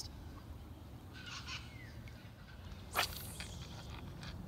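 A bird calls briefly about a second in, faint over a low steady outdoor background rumble.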